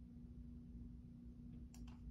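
Faint steady hum of a quiet room, then near the end two quick plastic key clicks on a Logitech keyboard as typing starts.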